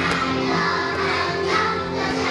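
A group of young children singing a graduation song together over a music accompaniment.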